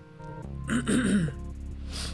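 A man clearing his throat once, a short rough vocal noise, over quiet background music with steady low bass notes; a brief breath follows near the end.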